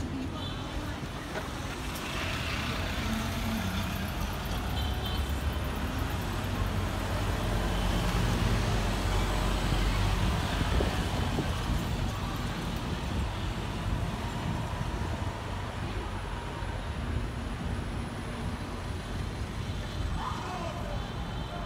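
Busy city street traffic: road vehicles, including a double-decker bus, a van and delivery motor scooters, driving past. The engine rumble grows louder through the middle as they come close.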